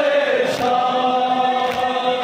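Men's voices chanting a noha, a Shia mourning elegy, in unison with long held notes, the lead voice amplified through a handheld microphone. Sharp slaps of hands beating on chests (matam) come in a couple of times.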